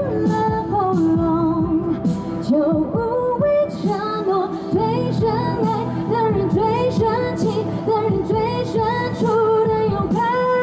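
A woman singing a Mandarin pop song live into a handheld microphone over backing music, holding a long note near the end.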